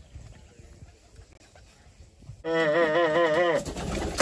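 Faint outdoor background, then about two and a half seconds in a person laughs in a high, quavering voice for about a second.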